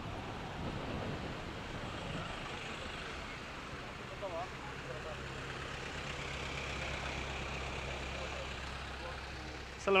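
Road traffic noise from a queue of cars in a jam, heard from a bicycle riding past them, with a steady low engine hum coming in about halfway through. A man's voice says a loud greeting right at the end.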